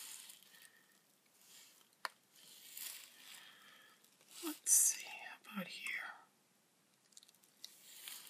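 Soft rubbing as a ball stylus tip is wiped clean on a paper towel, with a light click about two seconds in. Quiet murmured speech comes briefly around the middle.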